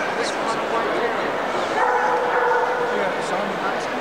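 Dogs barking and yipping in a large show hall over a steady murmur of crowd chatter, with a few short, sharp yips standing out.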